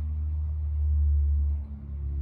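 A steady low rumble that eases off about one and a half seconds in.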